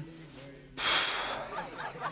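A short, sharp rush of breath, like a snort through the nose, about a second in. It is the loudest sound here and sits between low, quiet voice sounds.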